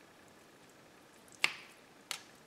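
Wet rice vermicelli draining in a plastic colander over a sink. It is mostly quiet, with one sharp wet sound about one and a half seconds in.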